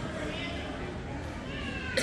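Irish Red and White Setter whining in high, sliding whimpers, twice, over the murmur of people talking in a hall, with a sharp knock right at the end.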